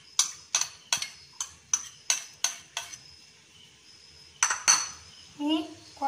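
Metal spoon knocking against a ceramic bowl to knock chopped vegetables out: about eight quick clinks in the first three seconds, then two more a little later.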